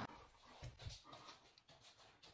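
Near silence between clips, with a few faint, brief sounds about half a second to a second in.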